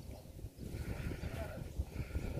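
Low, irregular rumbling noise on the microphone, with faint distant voices about halfway through.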